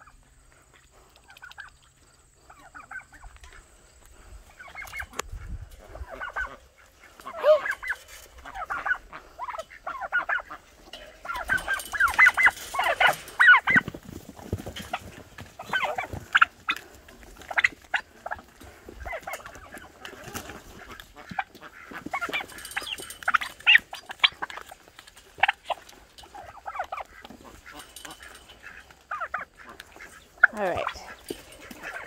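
White domestic turkeys calling: many short, high calls in quick runs, busiest about twelve seconds in and again around twenty-three seconds, with a few sharp taps among them.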